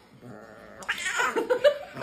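Domestic cat growling with a chicken wing clenched in its mouth: a faint low growl that swells about a second in into a loud, drawn-out yowl, the sound of a cat guarding its food.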